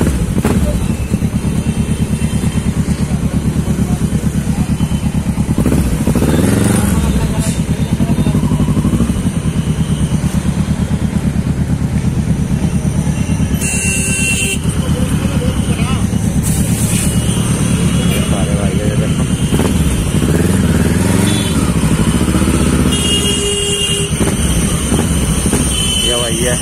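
Kawasaki Ninja 650R's parallel-twin engine idling with steady, even firing pulses, rising and falling in pitch briefly a couple of times. A vehicle horn sounds briefly near the end.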